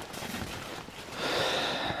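A person breathing out heavily, a long breathy hiss that swells about a second in, over faint rustling.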